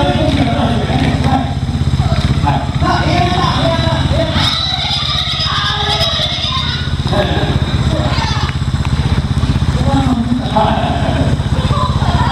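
Trials motorcycle engine running at a steady idle with a fine, even pulse, under a person talking over it.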